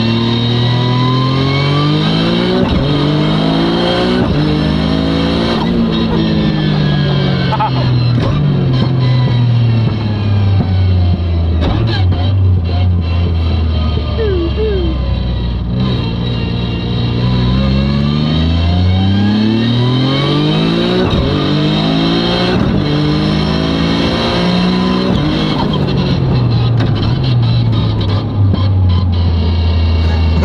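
Toyota GR Corolla's turbocharged three-cylinder engine heard from inside the cabin, pulling hard twice, its pitch climbing in steps through quick gear changes of the Kotouc sequential gearbox, then falling away as the car slows after each pull.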